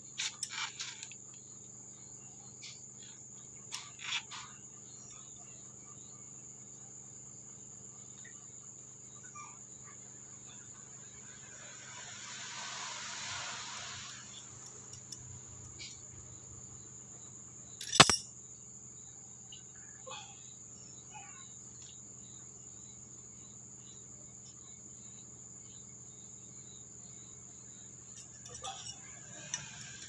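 Crickets trilling steadily and high-pitched in the background, with scattered small clicks and rustles of hands working a bonsai's branches, a soft rustle about 12 seconds in, and one sharp loud click about 18 seconds in.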